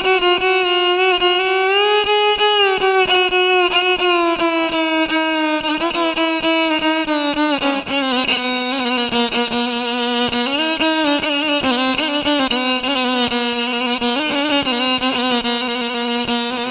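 Instrumental intro of a Bosnian folk song: a violin plays a sliding melody that drifts downward in pitch, over a quick, steady rhythmic accompaniment.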